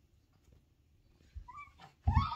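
Near silence, then near the end a brief high-pitched squeal from a baby.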